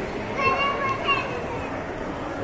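A child's high-pitched voice calls out briefly about half a second in, over steady background chatter.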